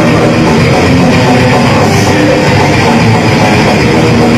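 Death metal band playing live at full volume: heavily distorted electric guitars over a drum kit, in one dense, unbroken wall of sound.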